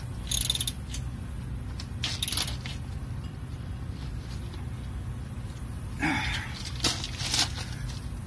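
A socket wrench ratcheting in short bursts of rapid clicks as the jack's mounting bolts are snugged down by hand, with no torque wrench, over a steady low hum.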